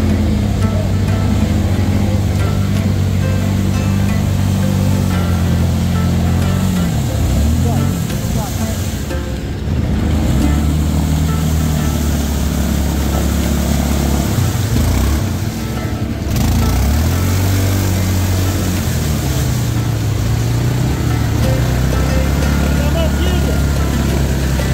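ATV engine revving hard under load as the quad churns through deep mud, its note rising and falling, with a couple of brief dips where the revs drop.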